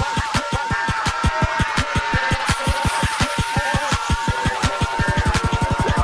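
Fast free-party tekno with a rapid kick drum and a repeating high synth riff with falling glides; the kicks come faster about five seconds in.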